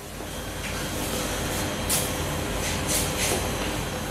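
Steady rumbling background noise with a low hum, broken by a few short clicks about two and three seconds in.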